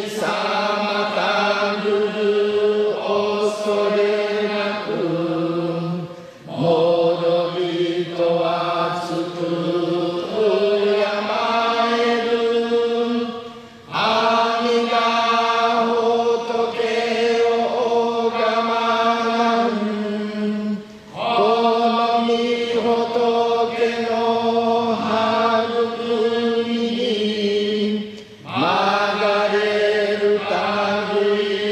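Jodo Shinshu Buddhist liturgical chanting: a voice holding long sustained notes that step up and down in pitch, in phrases of several seconds with short breaks for breath.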